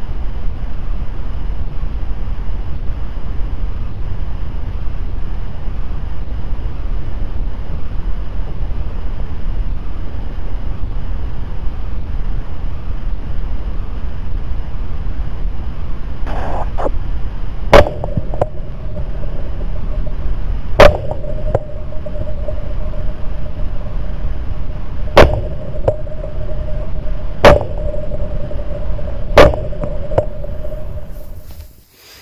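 Steady wind buffeting on the microphone. In the second half come five sharp, very loud cracks a few seconds apart. A steady high tone starts with the first crack and holds on after it.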